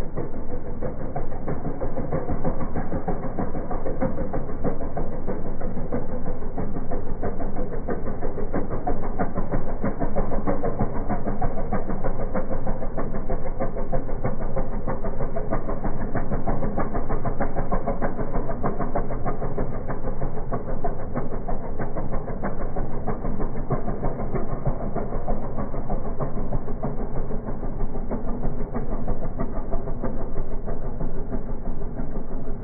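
Engine of a small wooden river cargo boat running steadily as the boat motors away, a constant, even mechanical drone.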